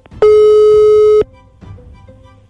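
A loud electronic tone, one steady pitch held for about a second, starts a moment in and cuts off suddenly. Quieter background music follows.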